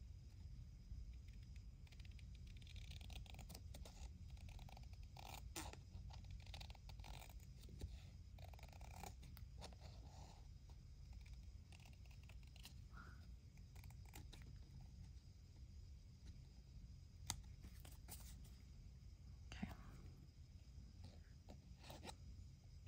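Near silence: a low steady room hum with faint rustles of paper being handled, and two small sharp clicks late on, about two seconds apart.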